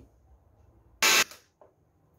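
A short burst of an electric countertop blender running, about a quarter-second long and a second in. It cuts off abruptly, and the rest is near silence.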